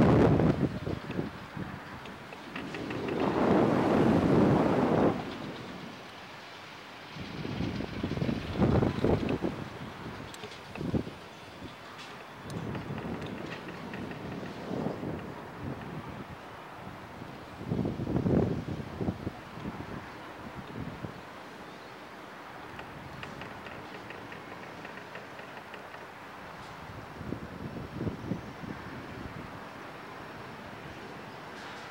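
Wind buffeting the microphone of an onboard camera on a swinging, tumbling reverse-bungee ride capsule: a rushing roar in gusts, a long loud one a few seconds in and shorter ones later, settling into a lower steady rush toward the end.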